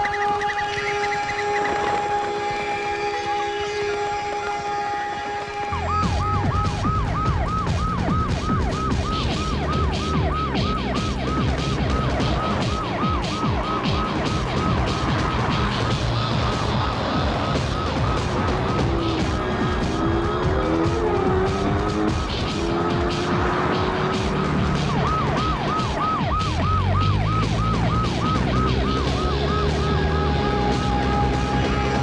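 Soundtrack of a film chase sequence. It opens with sustained musical notes, and about six seconds in a fast, evenly repeating siren-like warble starts over heavy low rumbling sound. Sliding tones cross each other around twenty seconds in.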